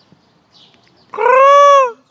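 Peacock giving a single loud call about a second in, lasting just under a second, its pitch rising slightly and then dropping off at the end.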